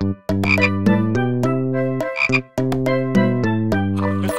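Cartoon frog croaks, pitched from note to note in a bouncy rhythm like a tune, with a brighter, higher croak about half a second in and again about two seconds later.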